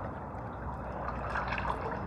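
Swimming-pool water lapping and trickling at the surface, a steady low wash.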